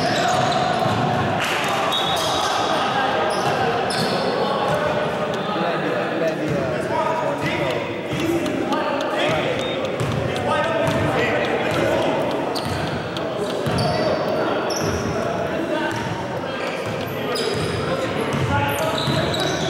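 Basketball being dribbled on a hardwood gym floor during a game, with players' voices calling out indistinctly, all echoing in a large gymnasium.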